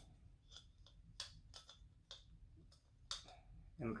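Faint, irregular small clicks and ticks as a Gas One mini backpacking stove is screwed by hand onto the threaded valve of a small isobutane-butane canister.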